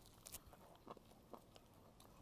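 Faint chewing of a bite of rolled jianbing flatbread with pickled vegetable strips: a few soft mouth clicks over near silence.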